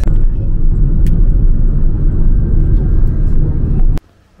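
Car driving along a road, a steady low rumble of engine and road noise heard from inside the car, cutting off suddenly at the end.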